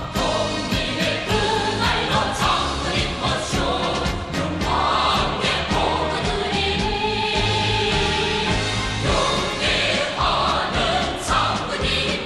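A choir singing a North Korean military song in Korean, with instrumental accompaniment.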